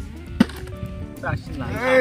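A partly filled plastic bottle landing upright on the ground after a flip: one sharp thud. A voice rises in pitch near the end, over steady background music.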